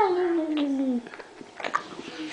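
Baby's long vocalising 'aah', its pitch sliding steadily downward for about a second, then a few faint clicks.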